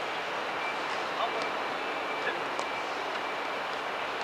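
Steady outdoor background hiss of a futsal game, with faint distant shouts from players and a couple of short, sharp ball kicks.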